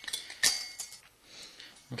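Stainless-steel sink strainers clinking against each other as they are handled and stacked, with a few light metallic clicks in the first second.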